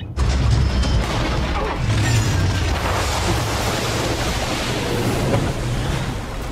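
Film sound effects of a spaceship crash-landing into water: a sudden heavy crash just after the start, then a sustained rushing, rumbling roar of churning water and straining craft.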